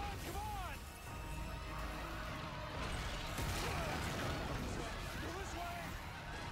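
Film soundtrack mix of people screaming as a crowd flees, over background music, with crashing sounds.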